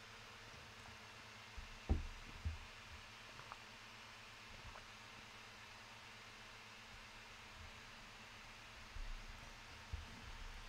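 Quiet room tone with a steady faint hiss, broken by a few soft low thumps about two seconds in and again near the end, with a couple of faint ticks between.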